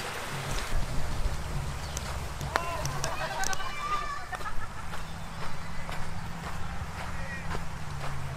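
Outdoor background of a low, steady rumble, with faint distant voices and a few small clicks in the middle.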